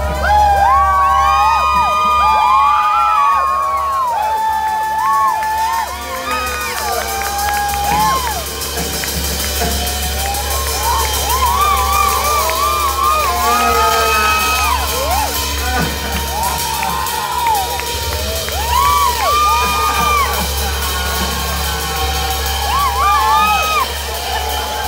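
Electric guitar played live, its notes bending up and back down in pitch over a steady low drone, with crowd cheering and whoops mixed in.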